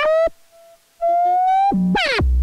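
Dreadbox Dysphonia modular synth voice playing gliding notes. A note rising in pitch cuts off a moment in, and after a near-silent gap a new note enters about halfway through, climbs slowly, then drops to a low note near the end.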